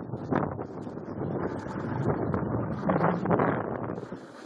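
Wind buffeting the camera's microphone during a downhill ski run, a rumbling rush that swells and fades.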